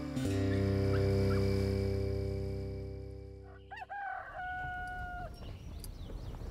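A held musical chord fades out over the first four seconds, then a rooster crows once, its call rising and then held on a steady note.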